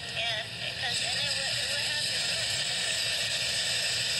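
Steady rushing noise of wind and surf on a phone's microphone at the beach, with a faint voice in the first second or so.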